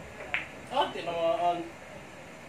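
Billiard balls clicking together sharply about a third of a second in as the balls roll after a pool shot, then a person's short voiced sound, a held vowel lasting about a second.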